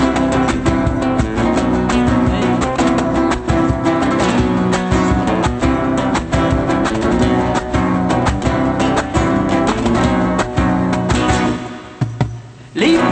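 Flamenco guitar playing: quick plucked and strummed notes in a dense, driving passage on Spanish acoustic guitar. It dies away just before the end.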